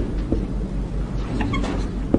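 Marker writing on a whiteboard: short scratches of the felt tip, with a brief squeak about one and a half seconds in, over a steady low hum.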